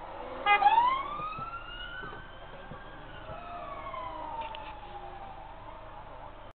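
Emergency-vehicle siren: a short loud blip about half a second in, then one slow wail that rises in pitch and falls gradually away over the following few seconds.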